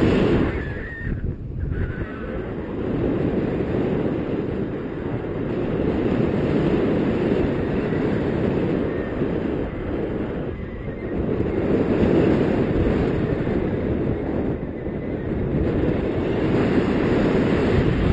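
Wind from the flight airspeed rushing over the microphone of a pole-held camera under a tandem paraglider: a steady low rumble that swells and eases.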